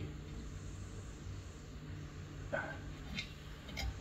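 A few faint, light metallic clicks as the shoe adjusters on a drum brake backing plate are moved by hand, over a low steady hum.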